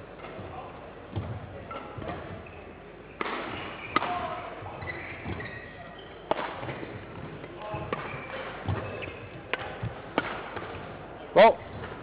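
Badminton rackets striking a shuttlecock back and forth in a rally, sharp hits about a second apart, echoing in a large sports hall. A short voice call comes near the end.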